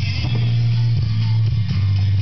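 Pop song with guitar and a strong bass line playing through the Webcor console stereo's speakers.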